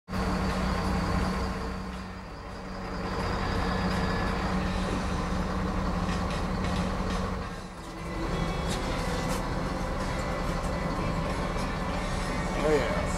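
Engine of a 31-foot Albemarle sportfishing boat running steadily under way, a low drone over the rush of wake water. It dips in level briefly about two seconds in and again near eight seconds.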